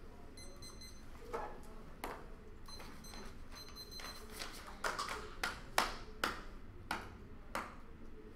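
Two short runs of faint, high electronic beeps in the first few seconds, then sheets of paper rustling and being shuffled in a quick string of crisp strokes.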